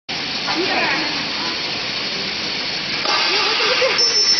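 Fruit sorting machine running, its motor and roller conveyor carrying small citrus fruit and making a steady noise. Faint voices talk over it twice.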